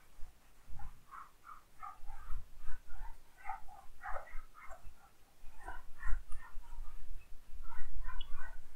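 Whiteboard eraser wiped back and forth across a whiteboard, giving a rapid, irregular string of short squeaks, with a few low bumps from the board.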